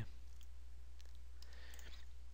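Low, steady electrical hum with a few faint clicks about a second in, from a computer mouse being handled.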